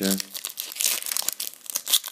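A Panini Euro 2012 foil trading-card sachet being torn open by hand, the wrapper crinkling, with a short sharp rip near the end.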